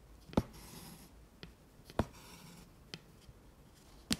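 Embroidery needle and thread going through fabric stretched taut in an embroidery hoop: two sharp pops about a second and a half apart as the needle pierces the cloth, each followed by a short hiss of thread drawn through, with two fainter ticks in between.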